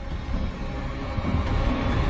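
A low, deep rumble that slowly builds in loudness.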